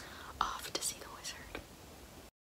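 A woman whispering softly, breathy and unvoiced, with a few short mouth clicks.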